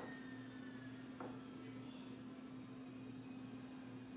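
Quiet room tone: a steady low electrical or ventilation hum under faint hiss, with one soft click about a second in.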